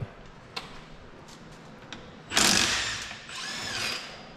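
Handheld power tool run in a short loud burst about two seconds in, then its motor whining up and back down near the end. A few light clicks come before it.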